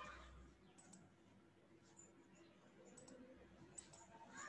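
Near silence: faint room tone with a few light computer mouse clicks.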